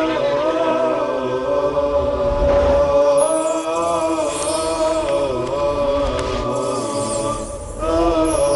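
A vocal theme chant: a voice singing a slow, wavering melody, held on long notes, with a faint whooshing sweep about three seconds in.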